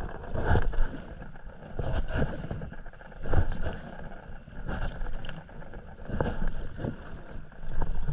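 Paddle strokes from a stand-up paddleboard, a swelling splash-and-pull of the blade through the water about every second and a half, over a low wind rumble on the microphone.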